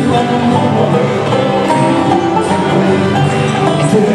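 Live bluegrass band playing an instrumental passage with banjo, fiddle, mandolin, acoustic guitars and upright bass, without singing.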